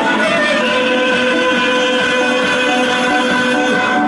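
Live music from a small amateur band with a drum kit and bass drum, a man singing into a handheld microphone over a sustained melody.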